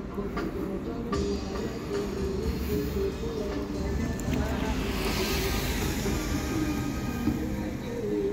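Music with held, changing notes over a steady low rumble of city traffic, with a brief swell of hiss about five seconds in.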